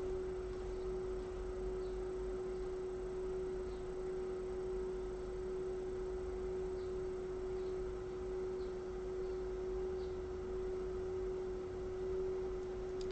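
A single steady pure tone, mid-pitched, held unchanged without fading, over a faint hiss.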